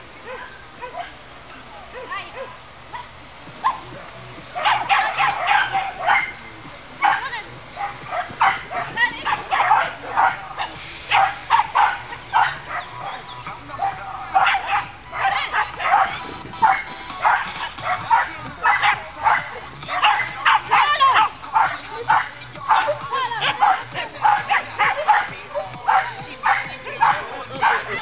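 A small dog barking over and over in short, rapid barks while it runs an agility course, starting about four seconds in.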